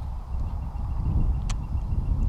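Irregular low rumble on an outdoor microphone, with one sharp click about one and a half seconds in.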